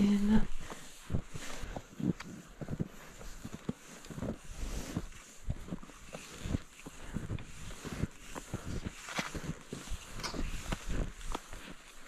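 Cross-country skis and poles crunching and swishing through deep snow in an uneven run of short strokes.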